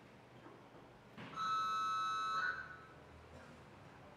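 Competition timer's electronic buzzer giving one steady beep of a little over a second: the warning that 30 seconds remain on the attempt clock.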